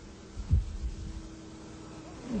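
Faint steady hum from a running motor-generator unit, with a low thump about half a second in.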